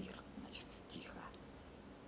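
A man's faint breathing and soft unvoiced mouth sounds in a pause between spoken phrases, over a low steady room hum.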